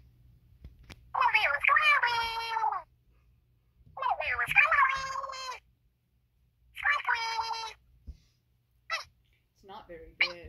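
A high-pitched, squeaky character voice makes three drawn-out wordless calls, each lasting one to two seconds. There are a few short clicks and handling sounds near the end.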